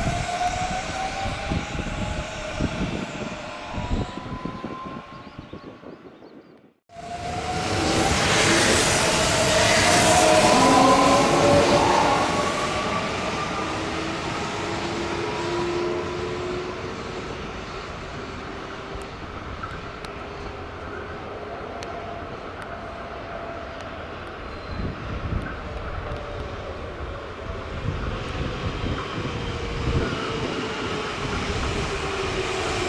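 Electric commuter train moving through a station, its motors whining in tones that rise in pitch, over wheel and rail noise. The sound breaks off suddenly about seven seconds in, then comes back louder with another rising whine that is loudest a few seconds later before easing to a steadier rumble.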